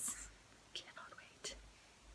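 The end of a spoken word fades out, then a quiet pause with faint breathy mouth sounds from the speaker and a small click about a second and a half in.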